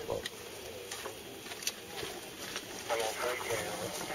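Faint outdoor background noise with a few sharp clicks, then a man's voice starts talking about three seconds in.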